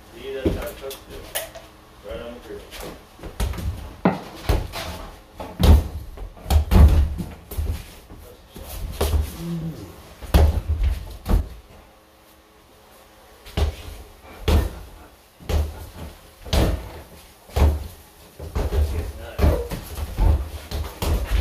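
Irregular knocks and thumps, many of them heavy, from things being handled and bumped close to the microphone, with a few short bits of voice; they ease off briefly a little past the middle.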